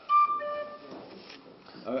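Tin whistle played briefly: a sharp start into one high held note lasting under a second, with a softer lower note sounding partway through, then it stops.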